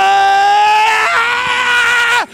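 A man's voice through the church microphone and speakers, holding a long, high, drawn-out cry. It breaks about a second in and holds a second, slightly higher note: a preacher's sustained shout at the climax of his sermon.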